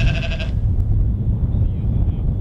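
A sheep's bleat sound effect: one short wavering call in the first half second. Behind it runs the steady low rumble of strong wind buffeting the microphone.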